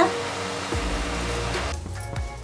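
Ridge gourd sabzi steaming and sizzling under a glass lid in a kadai over a gas flame, a steady hiss that cuts off sharply near the end, with background music.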